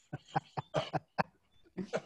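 A man laughing in a quick run of short, breathy bursts, then one more burst near the end.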